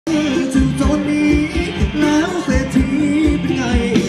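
Live band playing Thai ramwong dance music: a singing voice over a steady drum beat.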